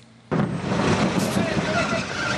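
A truck's engine running with road noise, starting abruptly a moment in after a brief near-silence, with faint voices in the background.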